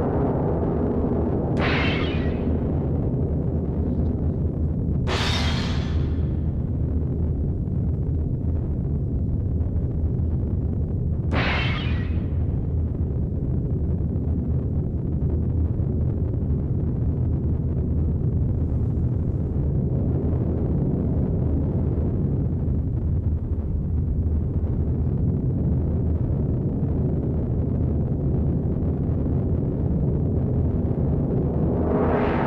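Experimental electronic music: a dense, steady low drone with three short bursts of noise sweeping up high, about two, five and eleven seconds in.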